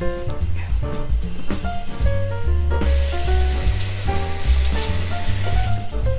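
Background music with a bass line; from about three seconds in, a hiss of ketchup squirting from a Heinz squeeze bottle lasts about three seconds and stops sharply.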